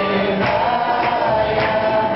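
A group chanting a devotional mantra together in long held notes, over a steady percussion beat about twice a second.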